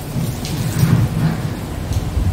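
A loud, uneven low rumbling noise, with no clear strokes or tones.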